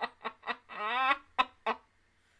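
A woman laughing hard in quick, even bursts, about four a second, with a rising high squeal of laughter about a second in and two more bursts before it stops.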